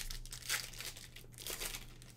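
Plastic wrapper of a trading card pack crinkling as it is handled and torn open, in three short bursts.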